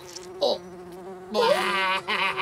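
Cartoon fly buzzing sound effect: a steady buzz that grows much louder about one and a half seconds in.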